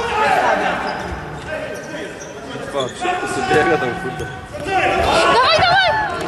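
Football match in a hall: players calling out to each other over the thuds of the ball being kicked and bouncing. Louder, high-pitched shouts come in near the end.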